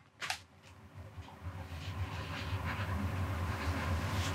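A single short click just after the start, then a faint, steady low hum of room noise.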